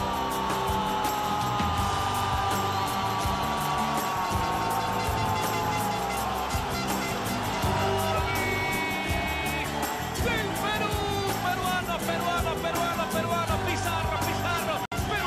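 Background music with a steady beat and long sliding melodic lines.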